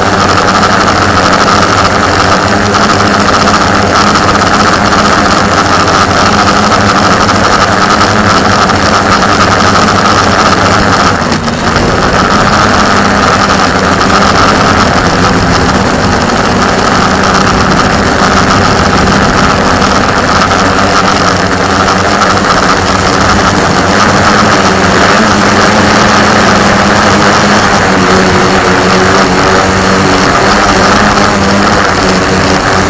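Electric motors and propellers of a multirotor drone, picked up by its on-board camera: a loud, steady whine and buzz as it climbs, with a brief dip about eleven seconds in.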